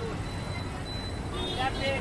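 Open-air market ambience: a steady low street rumble, with a vendor's voice starting to call out prices about one and a half seconds in.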